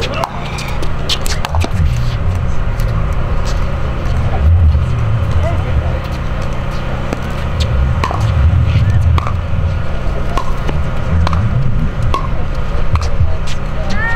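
Pickleball paddles popping against a plastic ball, several sharp hits in the first couple of seconds of a rally, with a few more taps later as the ball is handled between points. Under them runs a steady low rumble with faint voices of spectators.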